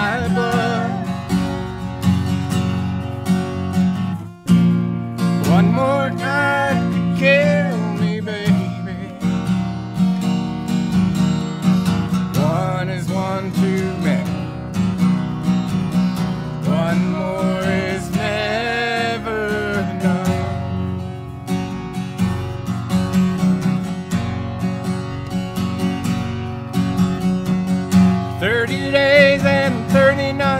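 A steel-string acoustic guitar strummed steadily in a country song, with sung vocal phrases coming in over it a few times, the longest a wavering held line about two-thirds of the way through.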